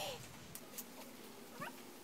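Faint, short rising calls from an animal, one near the start and a sharper one past the middle, with a couple of light clicks over low background noise.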